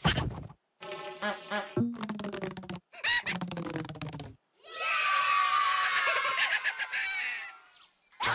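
High-pitched wordless cartoon cockroach voices chattering and laughing in short bursts, then a longer dense buzzing, chittering run with falling pitches over the second half.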